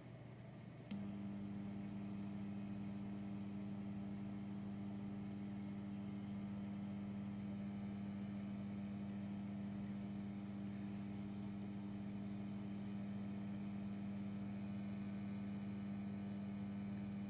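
Desktop computer restarting: a click about a second in as it powers back up, then its cooling fans run with a steady, even hum.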